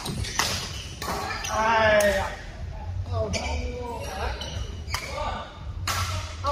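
Badminton play: a few sharp racket strikes and footfalls on the court, with players' voices, including a loud shout about two seconds in.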